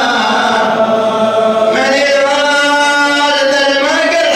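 A man's solo voice chanting a mournful Shia lament (nai) for Imam Hussein in Arabic into a microphone, holding long drawn-out notes that step to a new pitch about halfway through.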